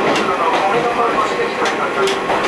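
KiHa 28 and KiHa 52 diesel railcars running coupled, heard at the gangway between them: the overlapping steel checker-plate gangway plates rattling and scraping against each other over steady running noise, with irregular sharp clicks.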